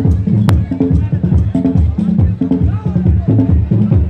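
Live African hand drumming played loud through the stage sound system, a fast, steady, driving beat of deep strokes. A sharp crack cuts through about half a second in.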